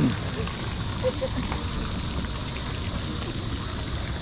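Steady outdoor noise with a low rumble, and faint distant voices of people swimming and kayaking on the river.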